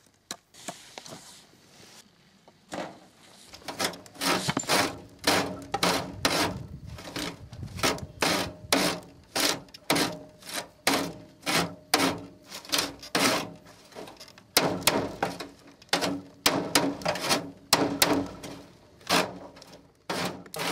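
Compost being rubbed and pushed back and forth across a wire-mesh sieve on a wooden frame, sifting into a wheelbarrow below: rhythmic scraping strokes about two a second, starting a few seconds in, with a brief pause near the middle.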